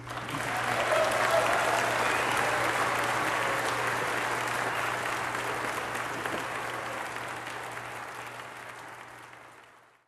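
Audience applauding at the end of a song. The clapping starts suddenly, is loudest about a second in, then slowly dies away and fades out at the end, over a faint steady low hum.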